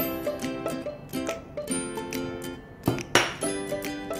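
Ukulele background music, with one sharp clink about three seconds in as a small bowl is set down on the table.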